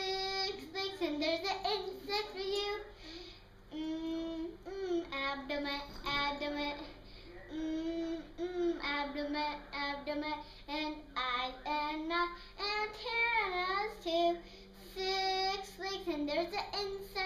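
A young girl singing a kindergarten action song in short phrases with brief pauses, her voice gliding up and down in pitch.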